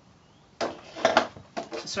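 Brief rustling and knocking of fabric being handled and pulled away from a sewing machine, loudest just after a second in.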